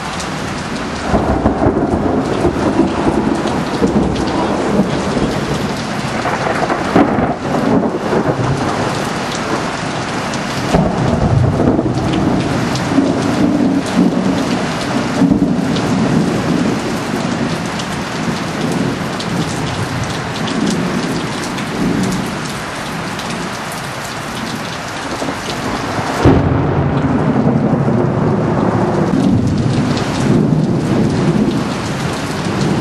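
Heavy rain pouring steadily through a thunderstorm, with repeated rolling thunder from lightning striking close by. The thunder swells about a second in, and a sudden, loud crack of thunder comes about 26 seconds in.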